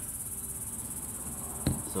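Steady high-pitched insect chorus, pulsing rapidly and evenly, with one sharp click near the end.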